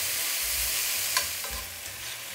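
Garlic, halved cherry tomatoes and basil sizzling in olive oil in an enamelled pan, stirred with a metal spoon that scrapes across the pan bottom twice about a second in.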